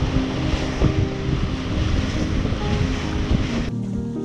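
Wind buffeting the microphone and water rushing past the hull of a motorboat under way, with a soft melody playing underneath. The rush cuts off sharply near the end, leaving the music.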